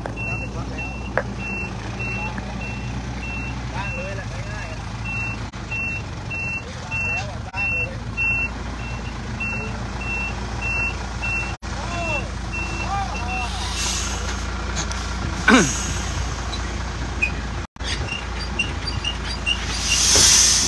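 Concrete mixer truck's reversing alarm beeping about twice a second over its running engine, loud at first and fainter after about 13 seconds. A brief loud burst of noise comes about three-quarters of the way through.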